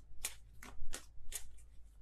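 A deck of tarot cards being shuffled by hand: a run of short, crisp papery strokes, about six in two seconds.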